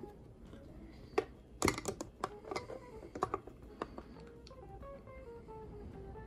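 Quiet background music with a slow stepping melody, over which a cluster of light clicks and taps sounds in the first few seconds as a metal tremolo bridge is handled and seated in a guitar's body cavity.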